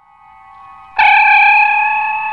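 Closing theme music: a faint tone swells in, then a loud sustained chord strikes about a second in and rings on.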